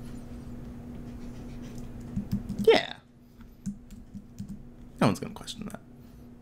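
Computer keyboard and mouse clicks while working, over a low steady hum that cuts out about three seconds in. A short voice sound with a sliding pitch comes in among the clicks, and a brief mumble follows near the end.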